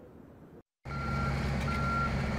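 Diesel construction machinery running, with a reversing alarm sounding a single high beep about every three-quarters of a second. It starts about a second in, after a brief moment of silence.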